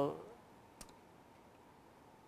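A man's drawn-out "well" trailing off at the start, then a quiet pause in a small room broken by one short, faint click a little under a second in.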